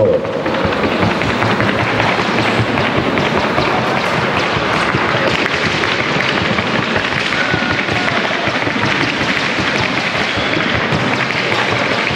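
Dense, rapid clatter of hoofbeats from paso fino fillies moving at the trocha gait over a hard track, more than one horse sounding at once. It runs at a steady level throughout.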